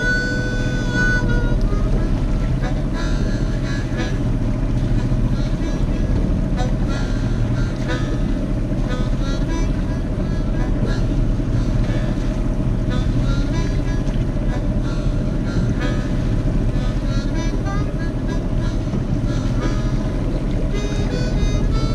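Steady drone of a sailing yacht's inboard engine while the boat is motoring, with background music playing over it.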